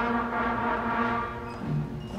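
Fifth-grade school concert band playing, trumpets and other brass holding a sustained chord that fades about a second and a half in as lower notes come in.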